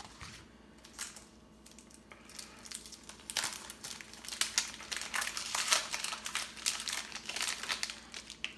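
Wrapper of a 1993 Topps baseball card pack crinkling and tearing as it is worked open by hand, sparse at first, then denser and louder from about three seconds in; the pack is a hard one to open.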